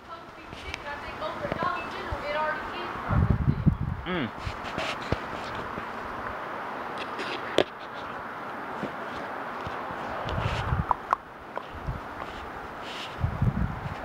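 Strong wind blowing across the microphone, with heavy low buffets in gusts about three seconds in, again near ten seconds and near the end. An indistinct voice is heard in the first few seconds.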